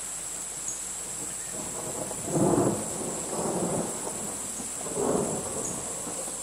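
A steady, high-pitched chorus of crickets, with three short, louder low sounds breaking in about two and a half, three and a half and five seconds in.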